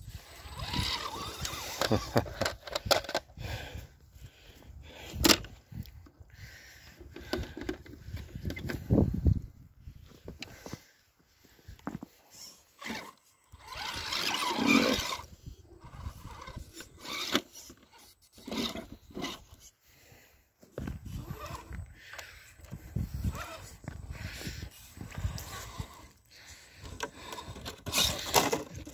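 Radio-controlled rock crawlers' electric motors and geared drivetrains running in irregular bursts during a rope recovery, with tyres and chassis scraping over rock and short quiet pauses between pushes.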